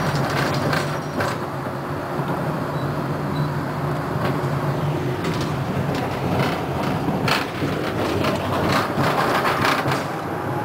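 Konstal 105Na tram running, heard from inside: a steady low hum of the drive under the clatter of the wheels on the rails, with sharp clicks from rail joints and points that come thicker in the last couple of seconds as it rolls through a junction.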